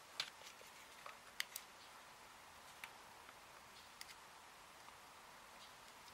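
Near silence, broken by a few faint, scattered clicks; the sharpest is about a second and a half in.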